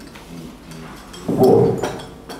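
A person's voice: after a quieter stretch, one short, loud vocal sound about a second and a half in.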